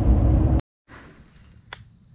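Road noise inside a moving vehicle's cabin, cut off abruptly about half a second in; after a short gap, a steady high-pitched insect drone with a faint click near the end.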